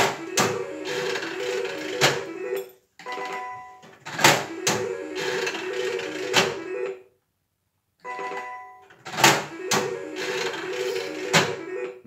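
Three-reel 25-cent slot machine played three times in a row: each spin has sharp clunks and a short jingle of stepping electronic tones while the reels turn, with the spins about four seconds apart.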